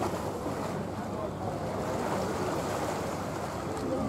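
Steady outdoor background noise without sudden sounds, with faint distant voices.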